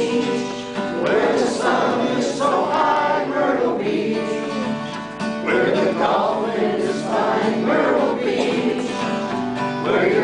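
A man singing a country-style song in phrases while strumming a steel-string acoustic guitar, with a brief lull between phrases about halfway through.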